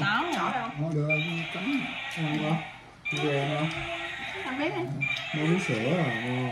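People talking at a dinner table, with a brief pause about halfway through.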